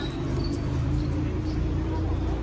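A few short, faint shoe squeaks on a sports court surface over a steady low background rumble.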